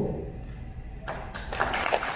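An audience starts applauding about a second in: many hands clapping, building up and continuing.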